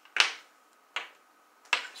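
Plastic domino tiles clacking on a hard tabletop: three sharp clicks, the first and loudest just after the start, the others about a second in and near the end.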